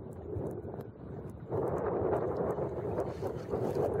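Wind rushing over the microphone and water moving along the hull of a sailboat under sail, growing louder about a second and a half in as a gust fills the sails and the boat heels.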